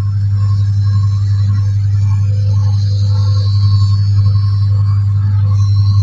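LE 420 optical lens auto edger running, its grinding wheel cutting the bevel into the edge of a plastic spectacle lens: a loud steady low hum with a faint high whine above it.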